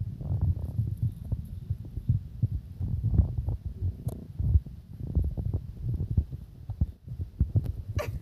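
Irregular low thumps and rumbling from a phone's microphone being handled and jostled about.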